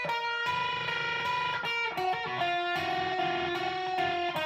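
Electric guitar playing a picked lead phrase in the E-flat Hirajoshi scale, note by note, with some notes held out for about a second.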